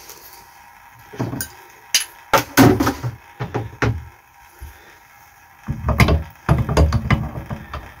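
Scattered clicks and knocks of hand tools being handled as a metal adjustable spanner is picked up and brought to a chrome bath tap. Heavier thuds and rubbing come in the last two seconds as it is fitted.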